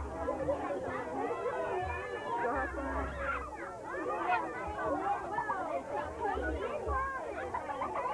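A crowd of children chattering, many voices overlapping with no pause, no single voice standing out. A low rumble comes and goes underneath.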